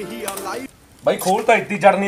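Background music ends about two-thirds of a second in. After a brief pause, a man starts speaking loudly.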